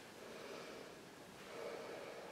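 Faint breathing: two soft breaths about a second apart, from a person exercising.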